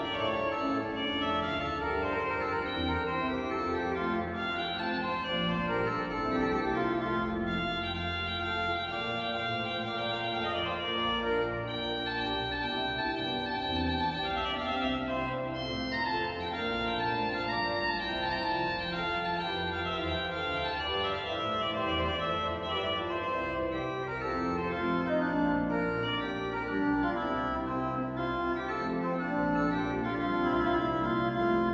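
Church pipe organ playing continuous sustained chords and a melodic line, registered with the Sesquialtera stop, which gives a cornet-like colour.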